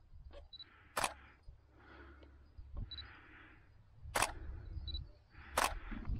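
Handling noise of a hand-held camera being moved while walking: three sharp clicks, about a second in, near four seconds and again just before the end, with soft rustling and a low rumble between them.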